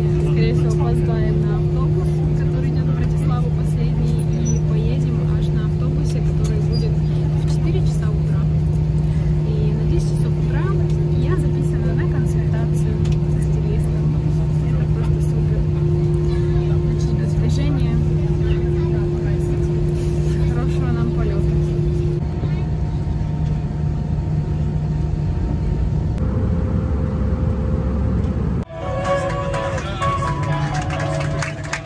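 Steady droning hum inside an airliner cabin, with faint passenger voices in the background. The higher part of the hum stops about three-quarters of the way through. Shortly before the end the sound cuts off suddenly and music begins.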